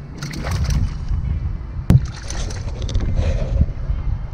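A small hooked fish splashing at the water's surface as it is reeled in beside a kayak, with wind rumbling on the microphone. A single sharp knock comes just before the two-second mark.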